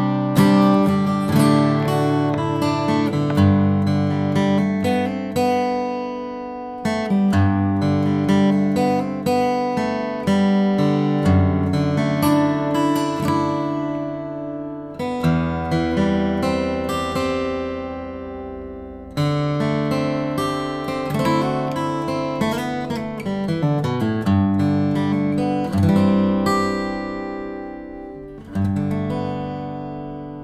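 All-solid Epiphone Hummingbird square-shoulder dreadnought acoustic guitar played fingerstyle: a flowing passage of picked chords and melody notes. Midway one chord is left to ring for several seconds, and a last chord struck near the end is let ring out and fade.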